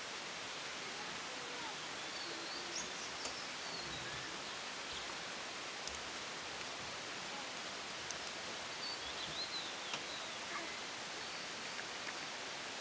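Forest ambience: a steady hiss with a few faint, high bird chirps, in a cluster about three seconds in and another about nine to ten seconds in.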